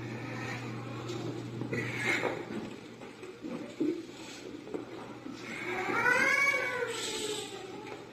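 A long wailing cry that rises and then falls in pitch, loudest about six seconds in, after shorter cries earlier on.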